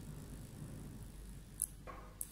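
Quiet room tone with a low steady hum, broken by a single sharp, high-pitched click about one and a half seconds in.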